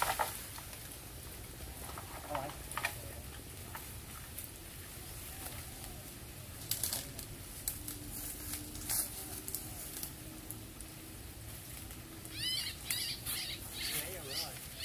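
Rustling of dry bamboo leaves and foliage with scattered light knocks and footsteps, and a quick run of short high chirps near the end.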